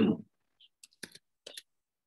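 Computer keyboard keystrokes: a few separate, quiet key clicks spread over the middle second.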